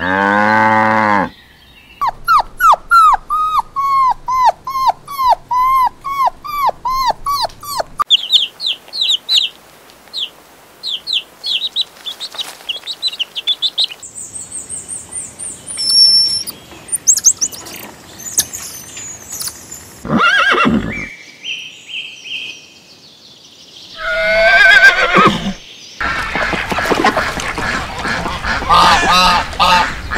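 A string of different animal calls cut one after another. It opens with the end of a cow's moo, followed by runs of repeated rising-and-falling chirping calls and assorted short cries. The last few seconds are a flock of domestic ducks calling together in a dense, overlapping chorus.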